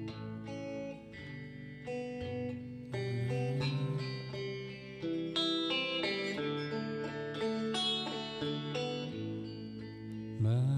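Instrumental guitar music: picked notes and chords changing about once a second over held low notes, with no singing.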